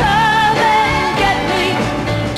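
A mid-1960s pop-soul record playing: a female singer over a full band and orchestra arrangement.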